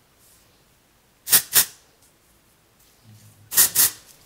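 Aerosol texture spray (Kristin Ess Dry Finish Working Texture Spray) hissing from the can in four short bursts: two about a second in, two more near the end.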